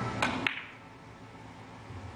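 Two sharp clacks of carom billiard balls about a quarter of a second apart, as a three-cushion shot is struck and the balls collide.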